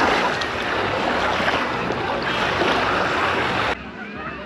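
Shallow sea water sloshing and small waves washing on a sandy shore: a steady, loud rush of water noise that cuts off abruptly near the end.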